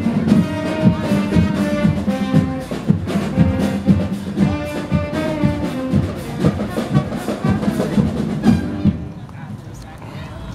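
Marching band (fanfarra) playing: a brass melody over a steady beat of drums, dropping in level about nine seconds in.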